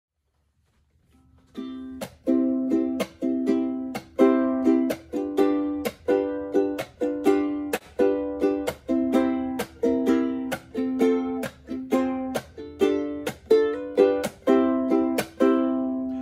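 Ukulele strummed in a steady rhythm using the chuck: ringing chords cut off again and again by the palm landing on the strings, giving a sharp percussive click each time. The playing starts about a second and a half in.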